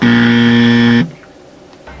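Game-show style buzzer sound effect: one steady low buzz lasting about a second that cuts off suddenly, marking a contestant's elimination.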